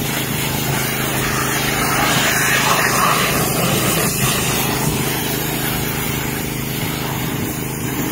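Pressure washer running steadily, its motor and pump humming under the hiss of the high-pressure water jet blasting against stacked wooden drying trays.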